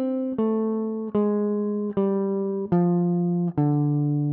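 Gibson ES-137 semi-hollow electric guitar, clean tone, playing a D minor blues scale downward one picked note at a time. Notes come evenly, a little more than one a second, each left to ring until the next.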